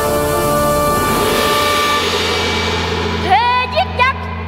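Dramatic stage music: held chords give way to a rushing swell over a steady low drone. About three seconds in, a child's high voice enters, singing a Vietnamese cải lương phrase with sliding, bending pitch.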